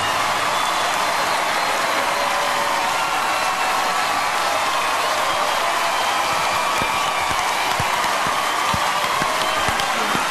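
Studio audience applauding and cheering, a steady dense roar of clapping with some shouts on top, while the backing music has dropped out.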